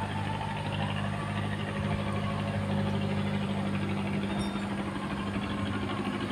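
A machine running with a steady low hum, even throughout.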